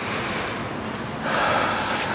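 A man breathing deeply: a long breath drawn in, then from a little over a second in a louder breath blown out through the mouth.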